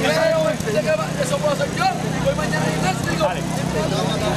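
Many voices talking over each other as crowd chatter, with no single voice standing out, over a steady low hum.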